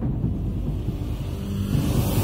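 Low, steady rumbling sound-effect bed of a TV channel's animated logo intro, mostly deep bass with little treble.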